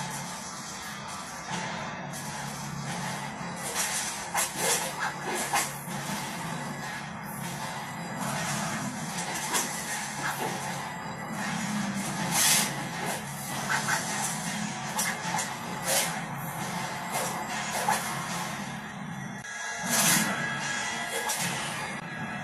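A film's soundtrack music playing from a television, with sharp crashes and hits scattered through it; the loudest come about halfway through and near the end.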